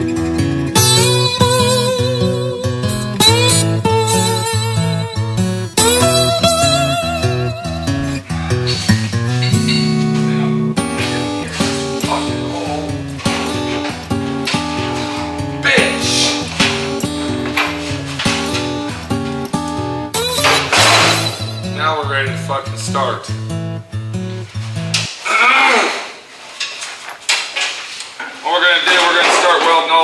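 Background music: a guitar track with a steady, rhythmic bass line, which stops about five seconds before the end. A man's voice follows near the end.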